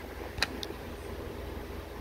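Low steady rumble with a sharp click about half a second in: handling noise from a phone camera being turned and moved.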